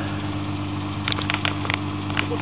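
Nissan GT-R's twin-turbo V6 idling steadily, with a few light clicks about halfway through.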